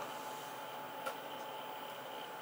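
Quiet room tone: a steady low hiss with a faint electrical whine, and a single faint tick about a second in.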